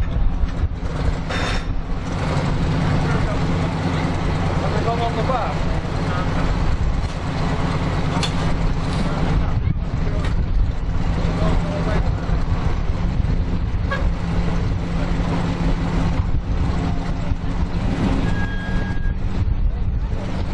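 Engine of a chopped, lowered custom car running at low speed, pulling gently as the car creeps over kerb ramps, with a steady low rumble that swells a couple of times.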